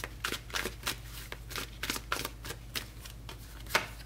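Tarot cards being shuffled by hand: light, irregular flicks of card against card, a few a second, with a sharper snap near the end as a card is drawn and laid onto the spread.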